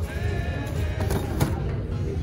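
Shop background music playing over a steady low rumble of camera handling, with a sharp click about halfway through.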